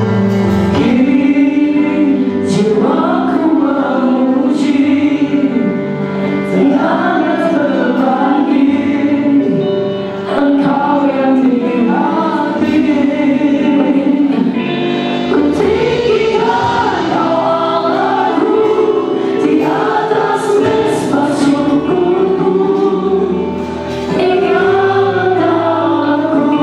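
A Christian worship song sung live by a small group of male and female singers into microphones, with instrumental accompaniment.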